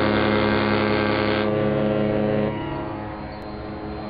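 A large ship's horn sounding one long, steady chord, which falls away and goes quieter about two and a half seconds in.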